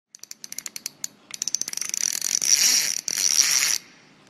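Ratchet-like clicking, slow at first, speeding up after about a second into a continuous loud buzz that breaks briefly near three seconds and cuts off sharply just before the end.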